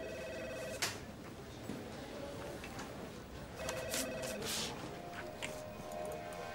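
Telephone ringing in two short electronic bursts about three and a half seconds apart, with a sharp click just after the first ring.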